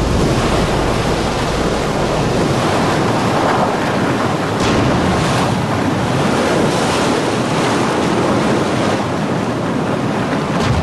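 Sea waves washing and wind blowing in a steady, fairly loud sea ambience, swelling briefly a couple of times.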